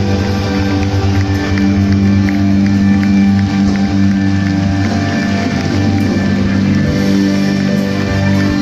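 Live music from a stage ensemble, played loud and steady with long held notes.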